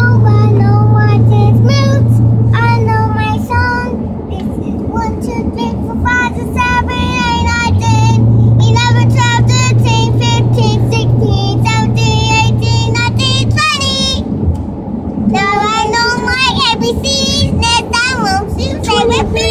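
A young child singing in short, wavering phrases inside a moving car, over the car's low road drone. A steady low hum comes in twice, for a few seconds each time.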